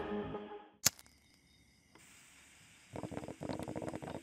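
A hip-hop track's last beat dies away within about half a second, and a single sharp click follows just before one second. Then comes near silence, and faint, quick crackling ticks start about three seconds in as the next track's intro begins.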